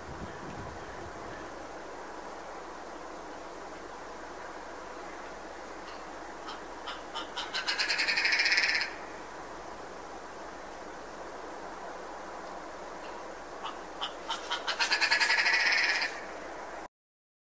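Red grouse calling twice, about halfway through and again near the end. Each call is a run of clicking notes that speeds up into a rattle and then stops sharply, over a steady background hiss.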